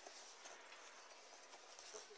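Near silence: a faint, steady background hiss with no distinct sound events.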